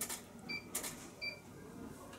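Studio photography gear: a camera shutter clicking a few times, with two short, high electronic beeps about three-quarters of a second apart.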